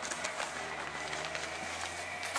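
Steady low hum of room noise with a few faint clicks and rustles of handling.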